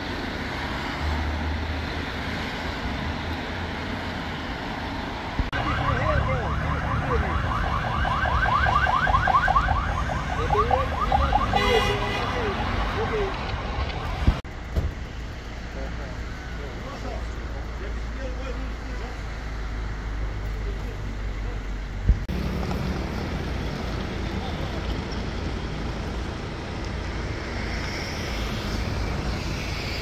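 An electronic siren warbles rapidly for several seconds, starting a few seconds in, over outdoor road noise with a steady low rumble.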